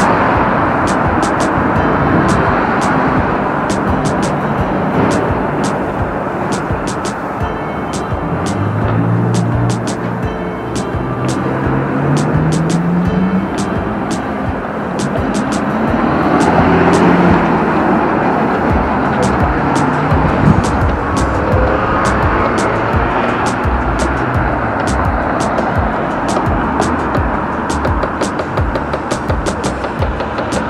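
Background music with a steady beat laid over city street traffic, cars passing; a low engine note rises in pitch about ten seconds in.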